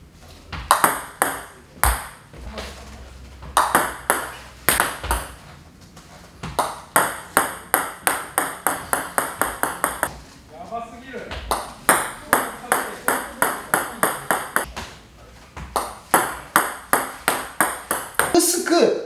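Table tennis ball clicking off the racket and bouncing on the table during repeated backspin serves. There are single sharp clicks, then several long runs of quick bounces.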